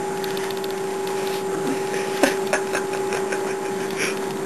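A steady, even hum over room hiss, with a couple of brief clicks about two and a half seconds in.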